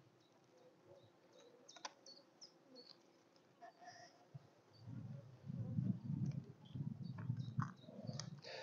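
Honeybees buzzing in an open top bar hive, a low, uneven hum that grows louder over the last few seconds, with faint clicks and a light knock of the wooden top bars being shifted.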